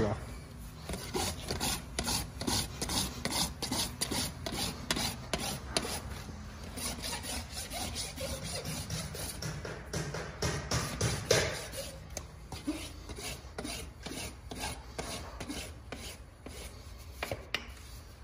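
Farrier's hoof rasp filing a horse's hoof wall, with repeated quick scraping strokes, about two to three a second, that thin out in the last few seconds.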